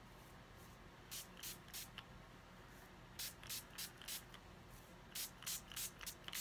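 Small spray bottle misting water over Distress Oxide–inked cardstock: about a dozen quick spritzes in three groups, roughly three a second.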